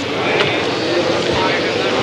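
Engines of a grid of racing sidecar outfits running together, a steady dense drone before the start.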